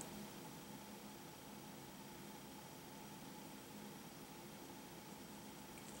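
Near silence: faint steady room hiss.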